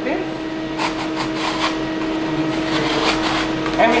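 A scraper scraping the frozen ice-cream slab clean in a series of short strokes, in two spells about a second in and near the end, over a steady hum.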